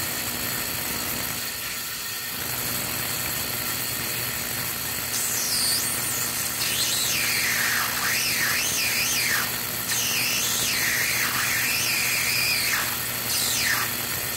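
Tesla coil running with a steady low hum, and from about five seconds in a high, warbling squeal that sweeps up and down in pitch as a wire is held near the coil's top. The builder puts the squeal down to frequency feedback from the ultrasonic transducer's vibration reaching the coil.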